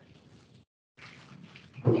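Near silence: faint hiss of a meeting-room audio feed in a pause between speakers, cutting out to total silence for a moment about half a second in. A voice begins near the end.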